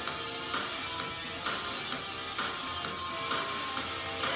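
Background workout music with held notes and a light, even pulse.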